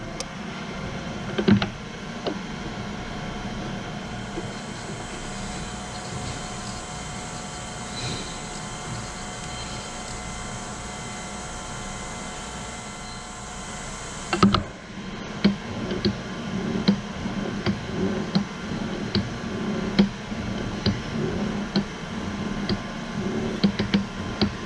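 A surface grinder running, its wheel spinning with a steady hum while it is lowered by hand toward the part on the magnetic chuck to touch off. A hiss stops with a knock about halfway, and regular light ticks follow as the wheel comes down to very light contact near the end.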